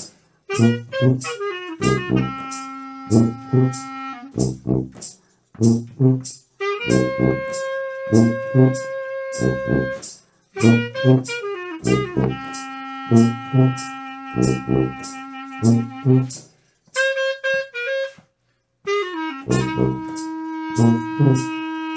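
A small jazz group playing: a horn holding long notes and running short stepped phrases over regular hard percussive hits. The music stops dead a few times for under a second, once for about two seconds near the end.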